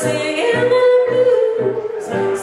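Live blues: a singing voice holds a long note with a slight bend, over hollow-body electric guitar and stage keyboard with a low bass line stepping about three notes a second.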